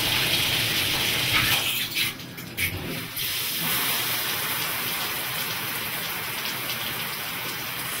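Water spraying at full flow from a Roadrunner 1.59-gallon-per-minute low-flow shower head into a bathtub, waiting to run warm. The spray is briefly broken up about two seconds in, then runs steadier and a little quieter from about three seconds.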